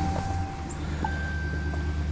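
A pickup truck's door-open warning chime: steady electronic tones held for about a second each, the pitch stepping up about a second in, over a low steady rumble.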